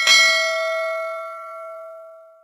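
Notification-bell chime sound effect: a bell is struck and rings out with several clear tones, fading slowly.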